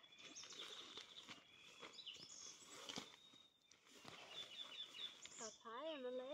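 Near silence with faint forest birdsong: thin high whistled notes and a quick run of chirps about four and a half seconds in. Near the end comes a louder wavering call that bends up and down.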